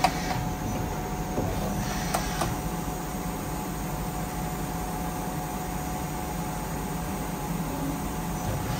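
Miyano BNE-51SY CNC lathe running through its cycle: a steady machine hum with a faint whine as the tool slides move, and sharp metallic clicks at the start and twice in quick succession about two seconds in.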